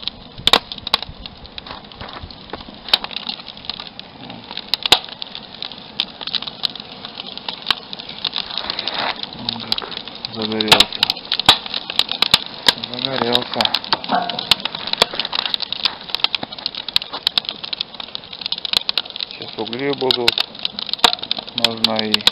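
Wood fire burning in a steel-drum grill, crackling with frequent sharp pops over a steady hiss.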